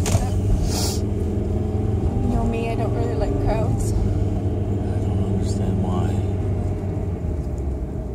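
A car being driven, heard from inside the cabin: a steady low rumble of engine and road noise, with some talking over it.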